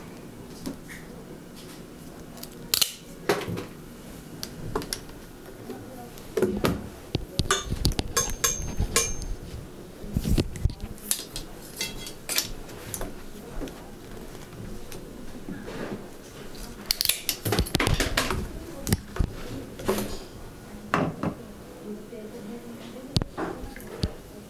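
Bicycle cable housing being handled and cut with cable cutters: a scattered series of sharp clicks and snaps, with the densest burst about seventeen seconds in.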